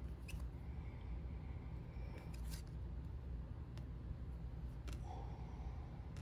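Baseball trading cards being flipped through by hand: a few faint, sharp clicks of card edges snapping past one another, spaced irregularly over a steady low hum.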